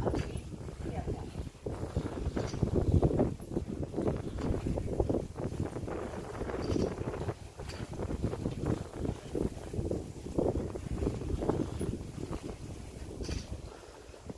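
Bicycle ridden over a stone-paved street, an uneven rattling and rumble from the bike and its wheels on the paving slabs.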